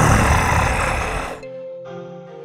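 A loud, harsh monster-voice sound effect, the sort used for a zombie, lasting about a second and a half and then cutting off, over background music that carries on quietly with steady tones.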